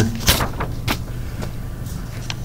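A pause between spoken phrases: a steady low electrical hum in the recording, with a few short, faint clicks.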